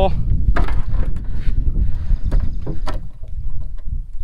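Crab dip net lifted from the water onto a boat's metal deck: a few sharp knocks of the net frame and handling against the deck, over a steady wind rumble on the microphone.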